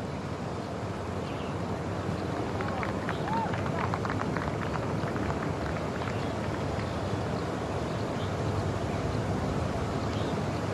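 Steady outdoor background noise picked up by the course microphones, with faint, distant voices about three to five seconds in.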